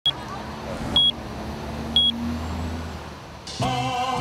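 Three short, high electronic beeps about a second apart, a clock-tick sound effect for an on-screen countdown timer, over a steady low rumble of street traffic. Music begins near the end.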